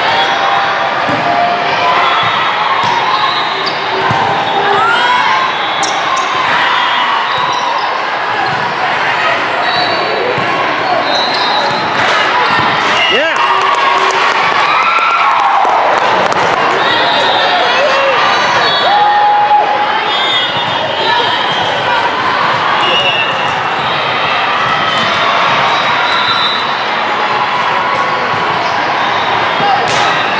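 Busy indoor volleyball hall: volleyballs being hit and bouncing on the floor again and again, short sneaker squeaks, and a steady babble of many voices, all echoing in a large hall.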